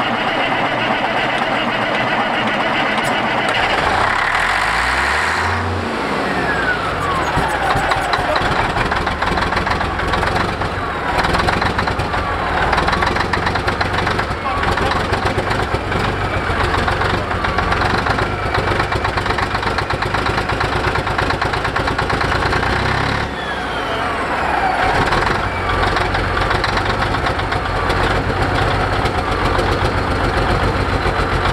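An old Peterbilt truck's diesel engine cranking on the starter for about four seconds, its fuel filter freshly filled with diesel, then catching and running. Twice the revs fall away with a falling whine, about six seconds in and again near twenty-three seconds, between steady running.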